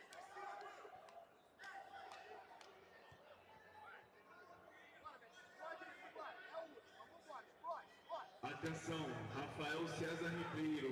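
Indistinct voices and chatter echoing around a large sports hall, fairly faint. Near the end a much louder voice comes in over a steady low hum.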